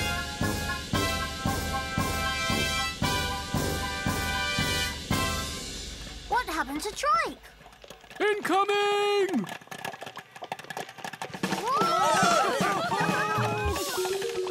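Marching-band music with brass and a steady bass-drum beat, which stops about five and a half seconds in. It is followed by sliding, wavering wordless voice sounds and cartoon effects, including one long held note and a busy burst near the end.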